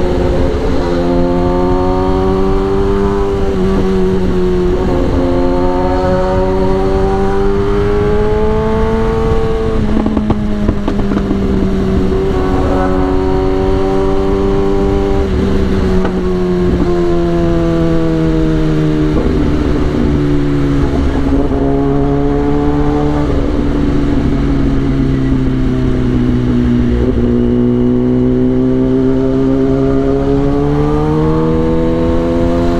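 Kawasaki ZX-10R inline-four engine running at light, steady throttle in slow traffic. Its pitch drifts gently up and down, falls slowly through the second half and rises again near the end, over a steady low rumble.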